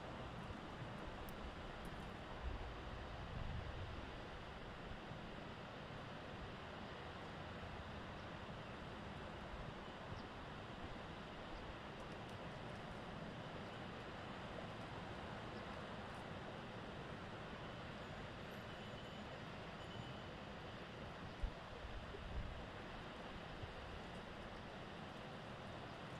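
Steady wind hiss with a few low gusts buffeting the microphone near the start and again near the end, and a couple of faint knocks.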